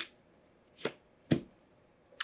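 Tarot cards being handled: a sharp card snap right at the start, then two short taps about a second in, the second with a dull low thud, as of the deck being set down on the cloth-covered table.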